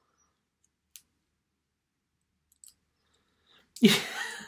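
A few faint, sharp clicks of the small plastic parts of a tiny transformable toy figure being worked by hand: one about a second in and two close together near three seconds. The clicks come as its shovel piece is refitted onto a different pair of peg holes.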